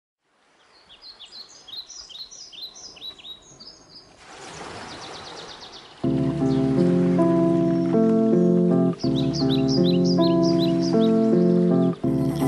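Intro of a chill old-school hip hop beat: birdsong chirps over a faint background for the first few seconds, then a hiss swells up. About six seconds in, a loop of sustained chords comes in much louder, dropping out for a moment just before nine seconds, with bird chirps layered over it again near the end.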